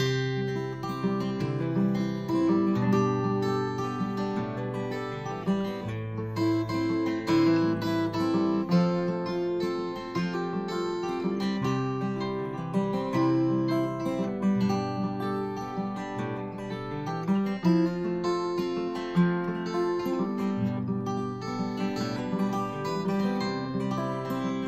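Two acoustic guitars playing a folk song's instrumental introduction together, picking and strumming chords in a steady rhythm that starts right after a count-in.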